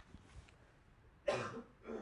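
A person coughing twice: a loud cough about a second and a quarter in and a shorter one near the end. Before it, faint taps of chalk on a blackboard.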